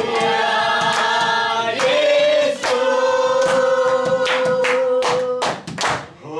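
A group of voices singing a devotional song together, with long held notes, one held for about three seconds. Several sharp hand claps come in the second half.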